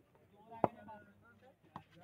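A single sharp knock about two-thirds of a second in, with a softer click near the end, over faint distant voices.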